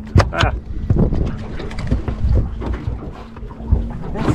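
Wind rumbling on the microphone aboard a small boat, under a steady low hum. A short laugh or exclamation comes near the start, and a few light knocks follow.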